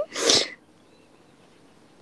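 A single short, breathy burst from a person, about half a second long, right at the start.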